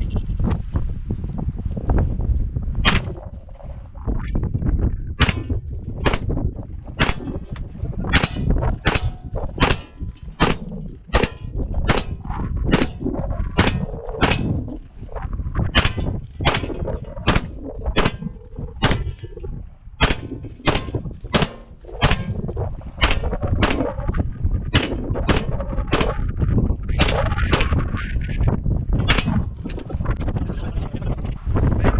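DIY MAC-style 9mm upper firing single shots in a steady string, roughly one to two a second, about thirty rounds in all, now running on a freshly replaced firing pin.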